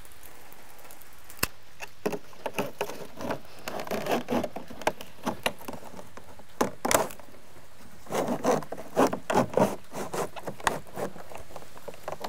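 Vinyl J-channel rubbing, scraping and knocking against vinyl siding as it is worked into place, in an irregular run of rubs and light knocks. A single sharp click comes about a second and a half in.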